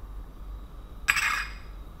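A brief single clink of a small glass bowl being set down, with a short ringing tail, about a second in, over a low steady room hum.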